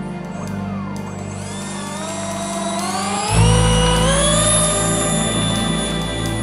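The twin electric ducted fans of a Dynam Cessna Citation 550 RC model jet spooling up: a whine that rises in pitch for about three seconds from a second and a half in, then holds steady. Background music plays throughout.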